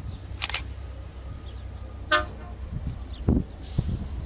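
A single brief toot of a diesel locomotive's air horn, one short pitched note, with a steady low rumble of wind on the microphone and a dull thump near the end.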